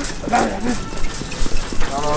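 A man laughs and says "no". Afterwards come a few faint knocks from shopping carts rolling along the store aisle.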